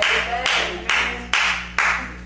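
Handclaps in a steady rhythm, five claps about two a second, each ringing briefly in the hall, over a low steady hum.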